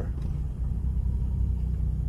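Steady low rumble of a Nissan Altima being driven, heard from inside the cabin.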